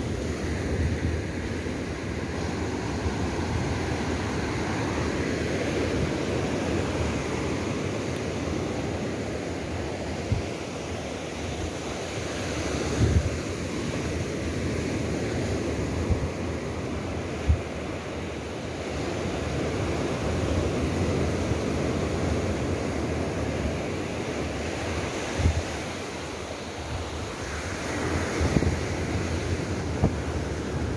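Small surf breaking and washing up a sandy beach, a steady rush that slowly swells and eases, with wind buffeting the microphone and a few brief low thumps.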